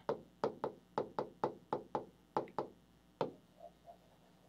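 Digital pen tip tapping against the screen of a large touchscreen display as words are written on it: about a dozen sharp, irregular taps that thin out in the last second.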